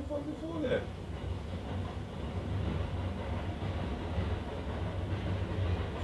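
A steady low rumble with a hiss over it, growing slightly louder, after a brief voice sound in the first second.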